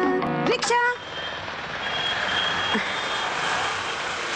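Film soundtrack music ends with a short flourish about a second in, giving way to a steady hiss of road-traffic ambience.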